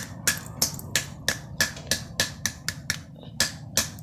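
A hammer striking a block of ice in a plastic bag, with sharp blows falling steadily at about three a second as the ice is broken up.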